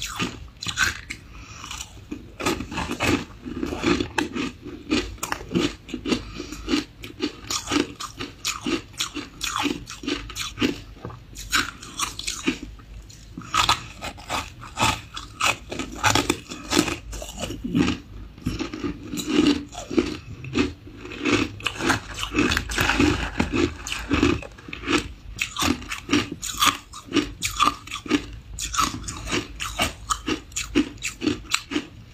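Biting and chewing of ice chunks coated in matcha and milk powder: a continuous run of sharp, crisp crunches, several a second.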